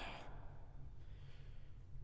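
A pause in a man's speech: a faint breath over a low, steady hum.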